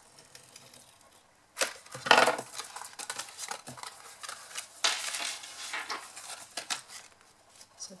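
Adhesive tape runner drawn along the edge of cardstock, laying double-sided tape, with paper rustling and rubbing as the card is handled and pressed. The loudest stroke comes about two seconds in, another around five seconds.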